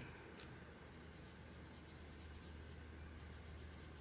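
Faint soft strokes of a water brush's bristles over a water-soluble wax pastel swatch on paper, against a steady low hum.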